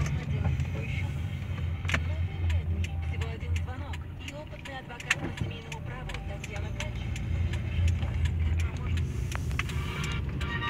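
Low, steady engine and road rumble inside a car's cabin while driving slowly, with a few sharp clicks.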